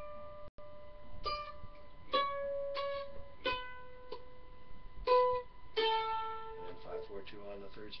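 Mandolin played with a flatpick: single notes picked slowly down the second (A) string, at the fifth, fourth and second frets and then open (D, C sharp, B, A), each note left to ring before the next.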